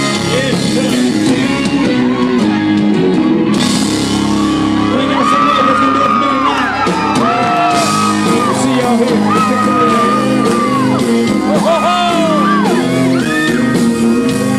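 Live country band playing loud, with a man singing into a microphone, heard from within the audience, and shouts from the crowd.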